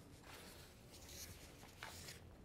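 Faint rustling of paper sheets being handled and leafed through, in a few short soft spells.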